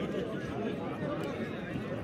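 Many men in a watching crowd talking among themselves at once, a steady babble of overlapping voices with no single voice standing out.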